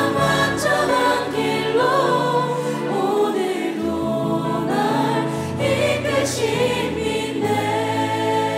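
Live worship band playing a slow Korean worship song, with several vocalists singing over sustained keyboard and bass notes.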